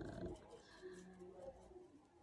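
Near silence: room tone, with the end of a woman's speech fading at the start and a faint low hum about a second in.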